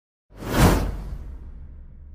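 A swoosh sound effect with a deep rumble under it for a logo intro, coming in about a third of a second in, peaking almost at once and then fading away over about a second and a half.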